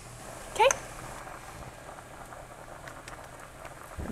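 A pot boiling steadily on the stovetop, with one short rising squeak about half a second in.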